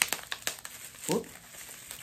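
Packaging crinkling as a wrapped item is handled and unwrapped, loudest in the first half-second, with a short spoken "whoop" about a second in.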